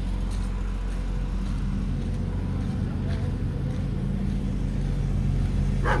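A motor vehicle's engine running steadily at low revs, a low even hum.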